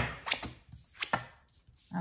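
Oracle cards being dealt from the deck and laid on a cloth-covered table: a sharp tap at the start, then a few softer taps and card slides.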